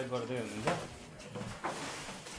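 People talking in short, indistinct snatches of speech with pauses between them.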